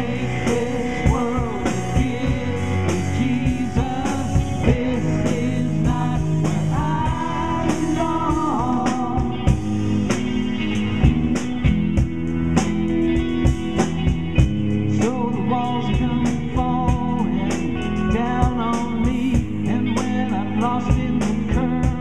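Live pop-rock band playing: drum kit keeping a steady beat under strummed acoustic guitar, electric guitar and bass, with a melodic lead line weaving over the top.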